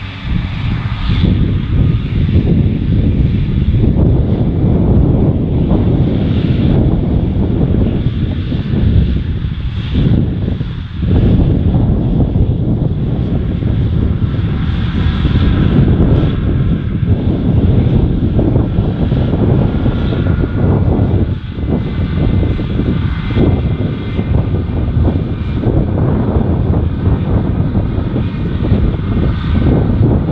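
John Deere tractor pulling a trailed mower, engine and mower running steadily with a faint high whine, under heavy wind buffeting on the microphone.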